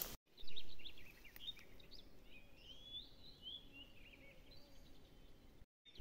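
Faint birdsong: a few short chirps, then a warbling phrase about two to four seconds in, over a low steady outdoor background. A brief muffled bump sounds just after the start.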